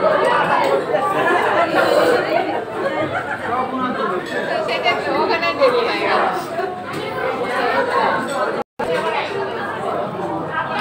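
Many voices talking over one another in a large, busy room: the babble of diners. It cuts out briefly near the end.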